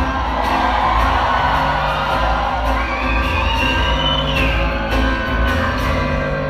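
Live acoustic guitar music, with the audience cheering and whooping over it; a high drawn-out whoop rises and falls near the middle.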